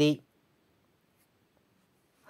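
A voice ends a word at the start, then near silence.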